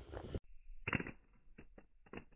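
Faint, muffled, slowed-down clicks and taps of a Motorola Razr V3m flip phone striking and settling on asphalt after a face-down drop, replayed in slow motion. The sound turns dull and muffled a moment in.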